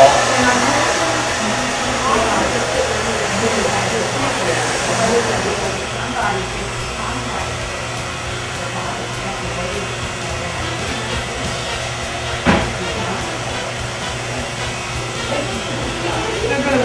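Handheld hair dryer blowing steadily, easing off about five to six seconds in. A quieter steady hum of electric hair clippers trimming the neckline follows, with one sharp click about twelve seconds in.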